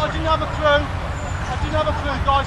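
Players' voices calling out across a football pitch, over a steady low rumble.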